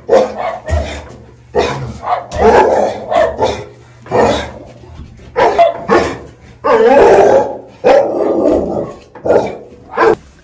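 A muzzled pit bull barking over and over, in loud bursts about once or twice a second, a few of them drawn out longer.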